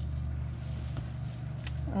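Hands rummaging through damp worm castings and bedding in a plastic worm bin, with a couple of faint soft clicks, over a steady low hum.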